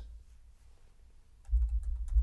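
Typing on a computer keyboard: quiet at first, then a short run of keystrokes starting about one and a half seconds in.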